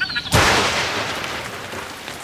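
A sudden thunderclap about a third of a second in, fading over a second or so into the steady hiss of falling rain.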